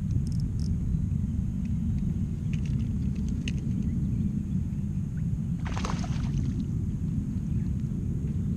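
Steady low rumble of wind buffeting the camera microphone on a kayak, with a few faint ticks and a short rush of noise about six seconds in.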